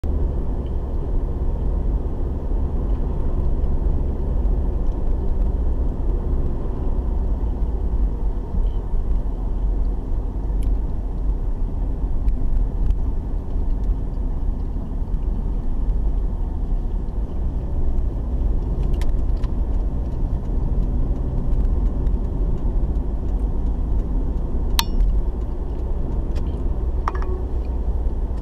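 A car's engine and tyre noise, heard from inside the cabin as a steady low rumble while driving, with a couple of sharp clicks in the second half.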